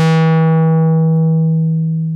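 1974 Minimoog synthesizer holding one sustained low note while its 24 dB-per-octave Moog ladder low-pass filter cutoff is swept down. The tone goes from bright to darker and dimmer as the high harmonics are carved away from the top down, and it starts to fade near the end.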